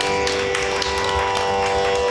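Carnatic music: steady sustained notes from violin and drone, with light mridangam strokes and no singing.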